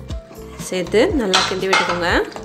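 Steel ladle stirring a wet rice-and-jaggery mixture in an aluminium pressure cooker, with metal scraping and clinking against the pot, over background music with a melody.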